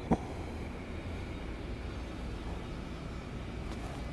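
Steady low background rumble of the room, with one sharp click just after the start.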